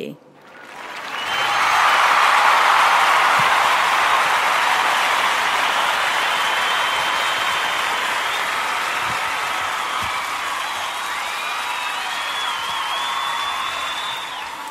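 Audience applause that swells over the first couple of seconds, holds steady, and slowly dies away.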